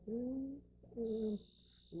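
A man's voice making two drawn-out hums, each about half a second, with a short gap between them. A steady high-pitched tone comes in about halfway through.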